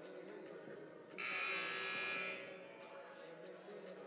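Gymnasium scoreboard horn sounds once, a buzzy tone lasting about a second, signalling the end of a timeout. Faint crowd murmur fills the hall around it.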